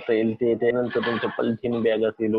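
Speech only: a man talking continuously.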